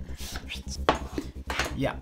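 A cardboard product box being handled on a table: a short rustle, then sharp knocks about a second in and again near the end as the box is taken out and set down.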